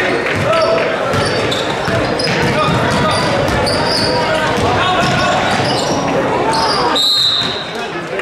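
Basketball being dribbled on a hardwood gym floor during play, with short high sneaker squeaks and the chatter and shouts of players and spectators echoing in the gym; the longest squeak comes about seven seconds in.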